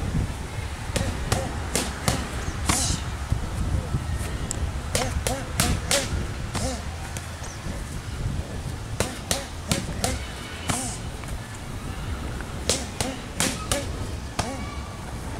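Strikes landing on kickboxing focus mitts with sharp smacks, in quick combinations of about four hits each, four times in a row.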